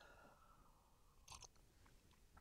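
Near silence while a man drinks from a mug, with two faint short sipping sounds a little past halfway.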